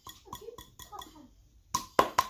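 Palm repeatedly slapping the base of an upturned bottle of thick sauce to get it to pour, short sharp knocks about four a second. They pause about midway, then come louder and quicker near the end.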